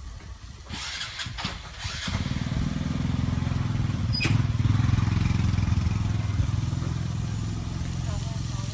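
A small engine, of the motorcycle kind, running steadily from about two seconds in, loudest around the middle and slowly fading toward the end. A few short rustling or scraping sounds come before it.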